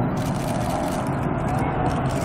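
Steady jet-engine noise from the four-engine Boeing 747 Shuttle Carrier Aircraft, carrying Space Shuttle Endeavour, as it flies low past, with faint voices of onlookers.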